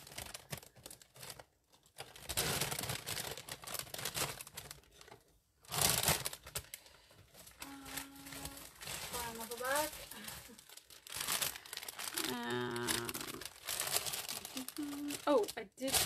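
Bags of chipboard and MDF embellishment pieces being rustled and rummaged through, crinkling in uneven bursts with short pauses, the loudest about six seconds in.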